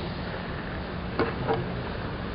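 Steady low background hiss with no clear event, and two faint short sounds a little after a second in.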